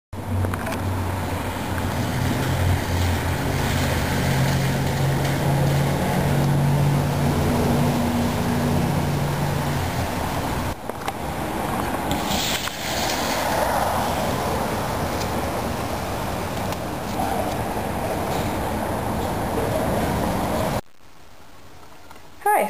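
Steady road traffic noise with a vehicle engine humming for the first ten seconds or so. The sound breaks off abruptly about ten seconds in, then continues, and drops to a much quieter room hush about a second before the end.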